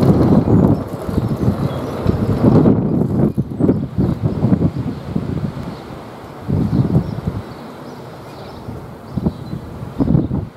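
Wind buffeting the microphone outdoors, a low rumbling noise that gusts louder and softer.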